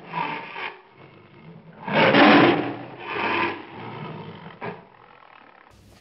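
Tiger roaring and growling in rough, drawn-out bursts. The loudest roar comes about two seconds in, followed by weaker growls.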